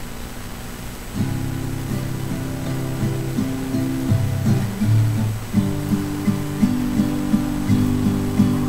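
Acoustic guitar beginning the slow instrumental intro of a ballad, its plucked chords coming in a little over a second in, after a moment of faint room hiss.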